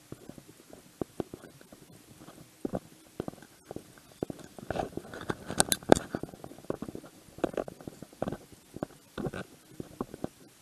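Handling noise from a body-worn action camera while walking: irregular thumps, scrapes and rustles of the casing rubbing against clothing. The noise grows denser and louder, with sharper clicks, around the middle.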